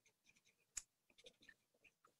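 Near silence: room tone with a few faint short clicks, the clearest a little under a second in.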